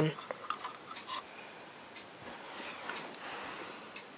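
Faint clicks and light rubbing of LEGO plastic pieces being handled, with a few small ticks in the first second and a soft rub about three seconds in.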